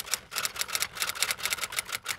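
Typewriter typing sound effect: a rapid run of key clicks, about ten a second, added to the text as it types itself out on screen.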